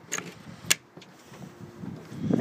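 A few light clicks and knocks as a boat's deck hatch lid is handled and shut, the sharpest click just past a third of the way in.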